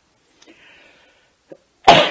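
A person's single loud, abrupt burst of breath from the throat and nose near the end, after a faint intake of breath.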